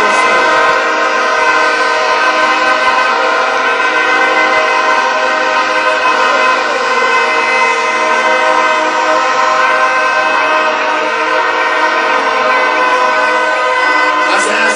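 A crowd blowing many horns together, making a dense, steady, loud blare with no break.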